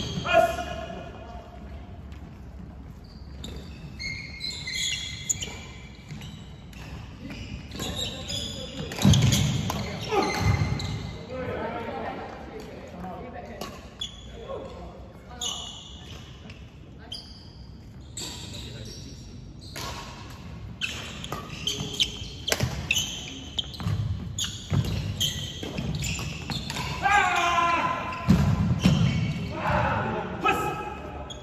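Badminton doubles play on a wooden indoor court: sharp racket hits on the shuttlecock, footsteps, and short high squeaks of shoes, echoing in a large hall. Players' voices come in now and then.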